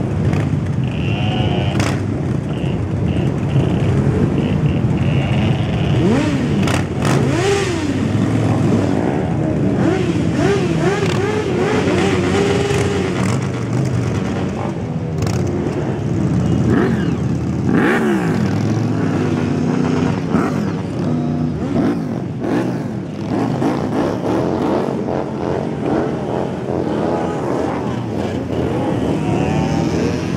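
A procession of motorcycles riding off one after another, their engines revving up and dropping back over and over as each pulls away, over the steady running of many more bikes waiting their turn.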